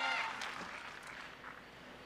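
Quiet outdoor ambience at an archery range. A pitched, voice-like sound dies away at the very start, two sharp clicks come about half a second and a second in, and a faint steady hiss remains.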